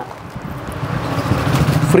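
A motor vehicle's engine and road noise, growing steadily louder as it passes.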